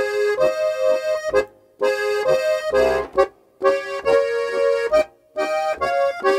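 Steirische Harmonika (diatonic button accordion) playing a folk melody with chords in four short phrases, each broken off by a brief silence.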